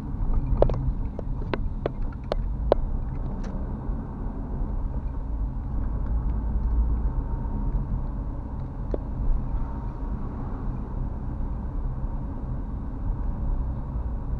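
Steady low engine and road rumble of a car heard from inside the cabin on wet roads. For the first three seconds or so, a regular ticking about two and a half times a second from the turn-signal indicator stops as the car makes its turn.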